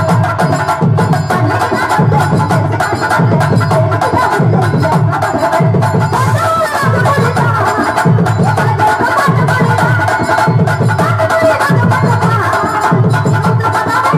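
Live drama-stage music: drums and tabla beat a steady rhythm, a heavy beat roughly every three-quarters of a second, under a wavering melody line.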